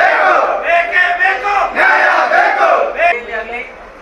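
A crowd chanting a protest slogan in unison, the same short phrase shouted over and over. The chant breaks off about three seconds in and the voices trail away.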